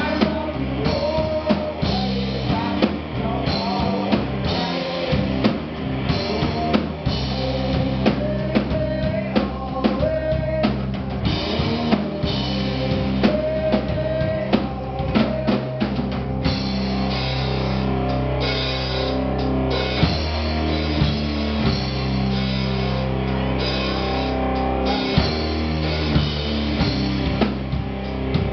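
Live rock band playing an instrumental passage with no vocals: electric guitars, keyboard and a drum kit driving a steady beat.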